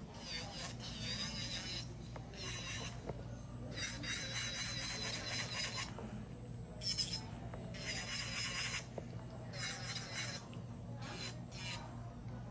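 Acrylic nail extensions being filed: rasping strokes in bursts of about one to two seconds with short pauses between, over a low steady hum.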